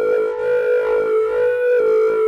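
Synthesizer lead played from an electronic wind controller in duophonic mode, sounding two notes at once. One high note is held steadily while a second line of short, quickly changing notes moves under it.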